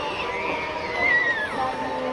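Festival crowd ambience with music playing: several steady held notes under a high, wavering tone that glides down in pitch about a second and a half in.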